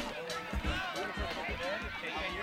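Several high voices of sideline spectators and children calling out over one another, with wind rumbling on the microphone.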